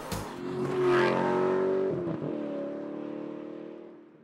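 The 2013 Buick Encore's 1.4-litre turbocharged four-cylinder pulling the car away. It rises to its loudest about a second in, then holds a steady engine note that fades out.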